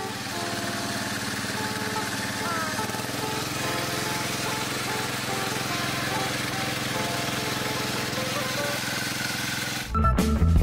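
Boat engine running steadily under way, with a constant rush of wind and water noise; the tail of guitar music fades out at the start.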